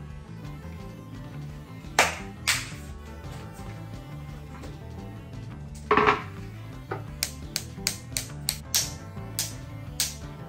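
Background acoustic guitar music, with sharp knocks and taps from kitchen work: two knocks about two seconds in, a louder knock around the middle, then a quick run of about eight light taps.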